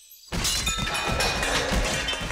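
Cartoon crash sound effect: a sudden loud clatter of smashing and breaking, with many rapid impacts of metal armour and debris, starting a fraction of a second in.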